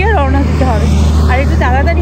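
A woman talking, over a steady low background rumble.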